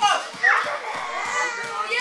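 Children's voices while a kid grapples with an adult: a quick high cry that sweeps upward about half a second in, then indistinct child vocalising.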